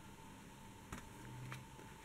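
Faint handling of a paper scrapbook album as its cardstock pages are folded shut, with one soft tap about a second in.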